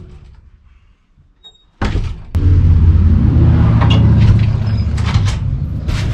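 A security screen door clacks once, then a loud, steady low engine rumble takes over, with scattered knocks and thuds on top of it.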